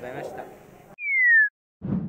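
A loud, pure electronic tone gliding downward in pitch for about half a second, a transition sound effect. Just before the end a noisy rush starts.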